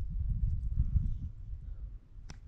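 Wind buffeting the microphone: a low, irregular rumble that rises and falls in gusts.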